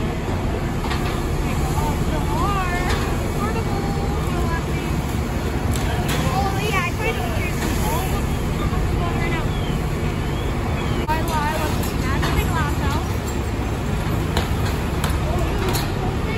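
Fire truck's diesel engine running steadily as a constant low rumble, with indistinct voices murmuring over it.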